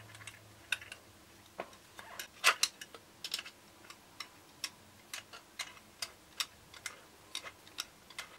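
Small metal clicks and taps as a tripod head is screwed onto a camera slider's carriage, with a long metal tool turning the screw beneath. The clicks come irregularly, a couple a second, and the loudest is about two and a half seconds in.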